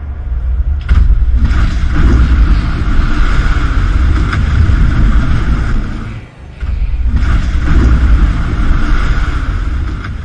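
Loud rushing, churning seawater with a deep rumble, in two long surges that break briefly a little past six seconds.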